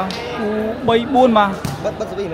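A volleyball struck by hand with a sharp smack shortly before the end, after voices calling out over the crowd's chatter.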